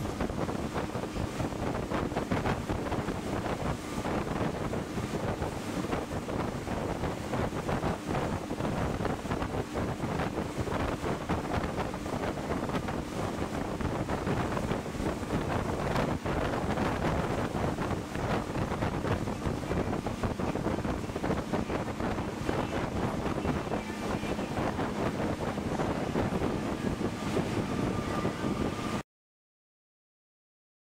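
Speedboat under way: a steady engine hum under the rush of water along the hull, with wind buffeting the microphone. It cuts off suddenly near the end.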